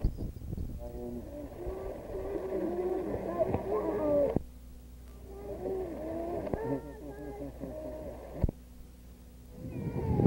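Indistinct voices talking over a steady low hum, in two stretches with a lull between. Sharp clicks come about four seconds in and again near the end.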